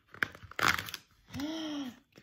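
Cardboard advent-calendar door being pulled open and a tea sachet drawn out of it: a few sharp clicks and crinkling, paper-and-cardboard scrapes in the first second. Near the end, a short hum of a voice that rises and falls.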